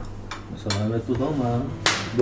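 A few sharp clinks of chopsticks and tableware at a dining table, the loudest one near the end.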